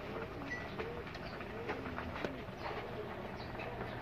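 A bird calling faintly and repeatedly in short low notes that bend in pitch, over a low steady hum.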